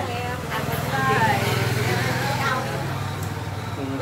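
A woman's voice in a soft, speech-like passage between sung lines of Mường folk song, over a steady low engine hum that swells in the middle.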